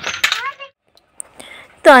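A child's high voice finishing a phrase, then a short pause broken by a single sharp click, and a lower adult voice starting to speak near the end.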